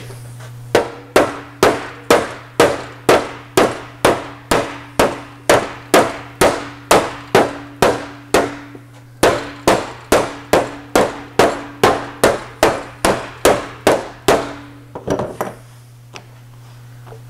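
Slapper striking the heated sheet-metal shroud of an Austin-Healey 3000, an even run of sharp, slightly ringing slaps about two a second, with a short pause past the middle and a few lighter taps near the end. The slapping knocks down a heat-softened dent while the panel is held under pressure.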